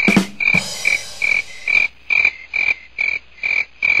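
Cricket chirping sound effect: a short, high chirp repeating evenly about twice a second, the stock awkward-silence gag after a joke falls flat. A soft hiss runs under the first couple of seconds.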